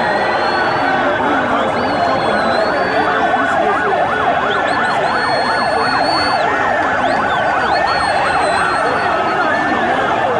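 A siren in fast yelp mode, its pitch sweeping up and down about three times a second, with slower wailing glides and a high tone coming and going, over the steady din of a large crowd.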